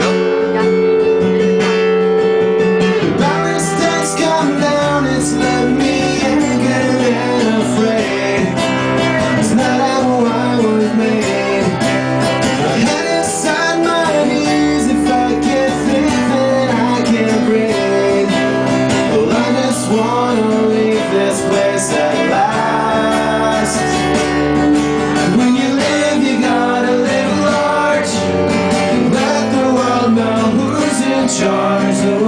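Live acoustic band playing: a strummed acoustic guitar with a deep bass line under the chords and a wavering melody line on top.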